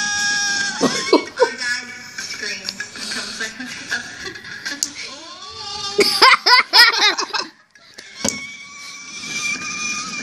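Girls' high-pitched screams and laughter, with a long held scream near the start and another starting about eight seconds in, after a brief lull.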